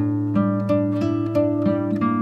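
Instrumental music: an acoustic guitar picking single notes in an even run, about three a second, over a held low bass note.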